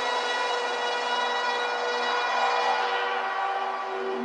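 Techno DJ mix in a breakdown: sustained electronic synth chords held without a kick drum or bass.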